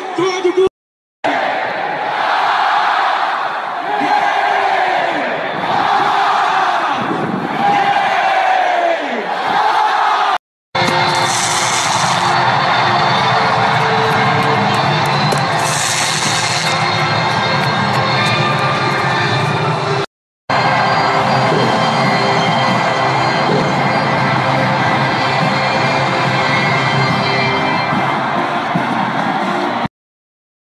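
Big stadium crowd with music playing over the stadium sound, recorded on a phone in three short clips. Each clip cuts off abruptly into a moment of silence before the next one starts.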